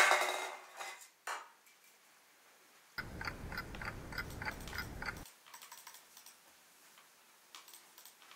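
Clock ticking fast, about four ticks a second, over a hiss. It starts about three seconds in and cuts off suddenly two seconds later. Before it, a louder noise dies away and a single click is heard.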